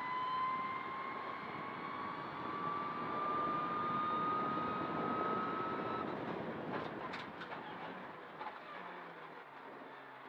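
Mitsubishi Lancer Evo X rally car heard from inside the cabin at speed on a straight, with a high whine climbing slowly in pitch for about six seconds. The sound then eases off and grows quieter towards the end as the driver lifts and slows for a chicane.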